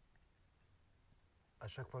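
Near silence with a few faint clicks in the first half, then a man's voice begins near the end.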